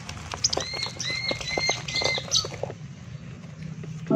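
Caged lovebirds calling: a run of about four short, alike chirps in quick succession in the first half, over scattered clicks and scuffles of birds moving in their cages.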